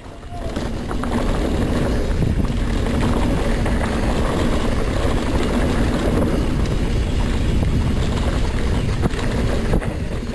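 Mountain bike descending a dusty trail at speed: a steady rush of wind on the microphone over the rumble of the tyres on the dirt.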